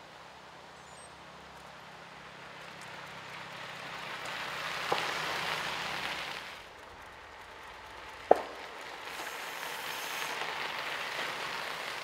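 Bicycle tyres crunching on a gravel road as a group of cyclists rides past, the noise swelling and fading twice. Two sharp clicks, about five and eight seconds in.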